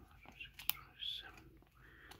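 Rigid plastic card holders clicking against each other as a stack of sleeved trading cards is flipped through by hand, with faint whispered counting. One sharper click stands out in the middle.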